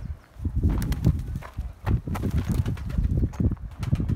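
Domestic pigeons cooing close by, with scattered clicks and knocks throughout.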